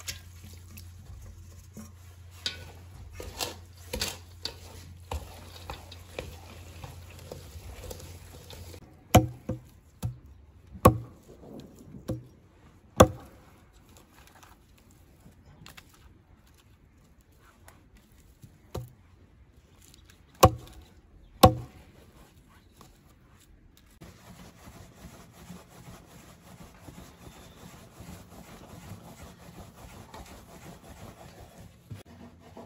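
Egg-and-chive dumpling filling being stirred in a steel bowl, with light clicks. Then a hatchet chops branches on a stump in about nine sharp, irregular strikes, the loudest sounds here. Near the end comes the soft rubbing of a wooden rolling pin rolling out dumpling wrappers on a floured board.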